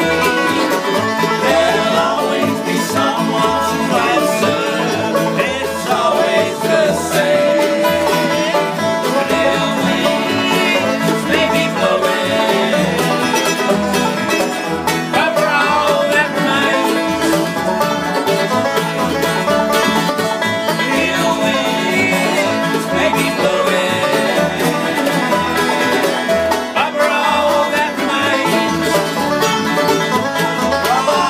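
A live bluegrass band plays: a picked banjo over a plucked upright double bass that steps out regular low notes, with another plucked string instrument strumming alongside. Men sing over the playing at times.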